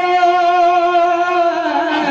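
Kirtan singing: a voice holds one long, steady note, then slides down near the end.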